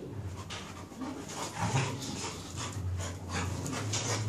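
A beagle and a cocker spaniel play-fighting, with panting and scuffling in irregular short bursts and a few sharp ticks. The loudest burst comes about a second and a half in.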